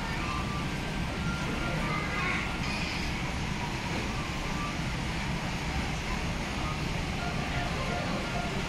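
Steady background noise of a busy indoor eating hall: a constant low rumble with faint, indistinct distant voices.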